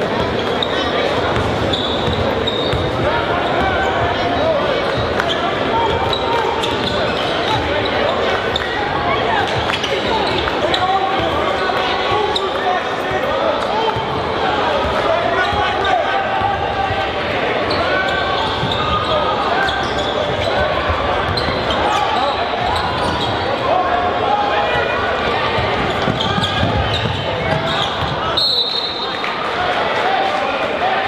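A basketball dribbled on a hardwood gym floor during live play, against a steady din of crowd chatter and shouts ringing through the gym.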